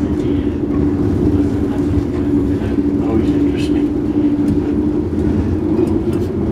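Passenger train running, heard from inside the carriage: a steady low rumble with a constant hum over it.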